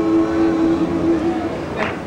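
A man singing one long held note that fades out about three-quarters of the way through.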